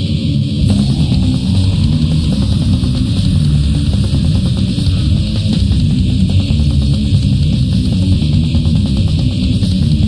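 Blackened death metal from a lo-fi 1997 promo cassette: guitars and a dense, fast drum beat. The full band comes in under a second in, after a quieter guitar passage.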